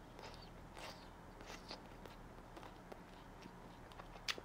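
Faint chewing with the mouth closed on butter-grilled gwamegi: scattered soft clicks and light crunches over a low steady room hum.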